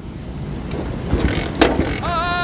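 A motorcycle that has broken down being cranked without the engine catching: a few short clunks over a low rumble that grows in the second half.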